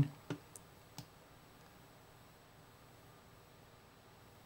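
Three short computer mouse clicks within the first second, then near silence with only faint room tone.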